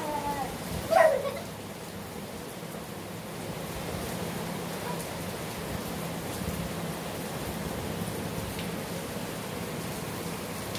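Steady hiss of background noise with a low hum underneath. About a second in comes one short, loud cry that falls in pitch.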